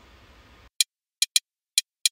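Drum-stick click samples played back alone from a dance-track drum arrangement: four short, bright clicks at uneven spacing, two of them close together in the middle.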